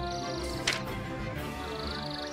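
Background music with sustained notes. A high, finely pulsed trill plays near the start and again near the end, and a short, sharp sound comes about two-thirds of a second in.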